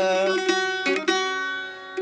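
Mandolin accompanying folk singing: a held sung note ends early on, then a few plucked notes ring and fade before the voice comes back in.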